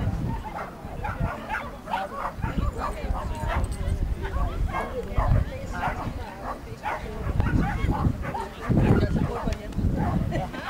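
A dog barking and yipping repeatedly, with people talking.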